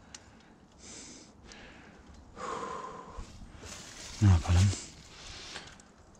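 A man's audible breathing: several noisy breaths of about half a second each, one with a hum in it, and a short two-syllable utterance a little after four seconds in.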